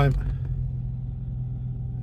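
BMW 3 Series 2.0 petrol four-cylinder engine idling steadily just after a first-time start, heard from inside the cabin as a low even hum.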